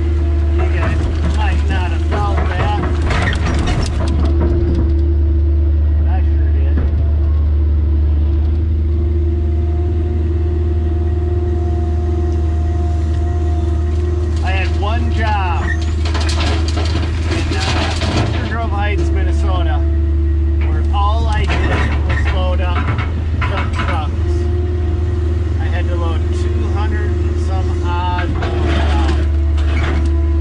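Diesel engine of an old 150–160 class Kobelco excavator running steadily under load, heard from inside the cab, with hydraulic whining that rises and falls as the boom and bucket work. About halfway through comes a rattle of dirt and rock as the bucket dumps into a dump truck.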